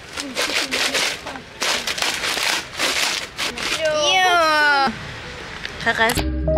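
Several people's voices talking over each other, then a drawn-out, high voice sliding up and down in pitch about four seconds in.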